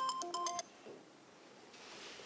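Mobile phone ringtone, a simple electronic melody of short beeping notes, that cuts off about half a second in as the call is answered, leaving quiet room tone.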